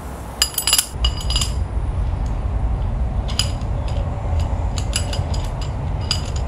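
Short metallic clinks and clicks of a steel adapter bit being pushed into an air hammer's chuck and turned in it, a few about half a second to a second and a half in and a cluster near the end, over a steady low rumble.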